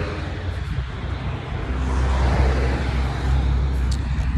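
Road traffic noise from a car, with a low rumble that grows louder about halfway through.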